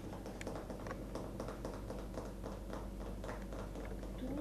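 Cutlery clicking lightly and repeatedly against a ceramic bowl as a mixture is stirred, about four to five ticks a second.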